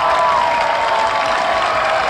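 Crowd cheering, with shouts and clapping.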